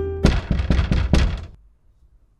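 Knocking on a front door: a quick run of about eight knocks lasting just over a second, then it stops.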